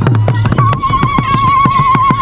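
Several tall stick-beaten drums playing a fast, driving rhythm. About half a second in, a long, high, warbling ululation joins over the drumming.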